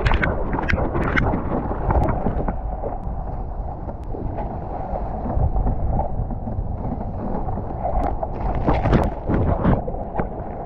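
Water splashing and sloshing right at the microphone as a surfer paddles a surfboard, each arm stroke throwing a splash, with wind buffeting the microphone. The splashes come thickest near the start and again near the end.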